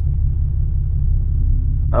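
Steady low rumble inside a moving truck's cab: road, engine and wind noise while driving.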